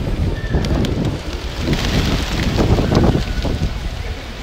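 A large flock of feral pigeons taking off together, a loud rush of many wingbeats that swells about two seconds in, with wind buffeting the microphone.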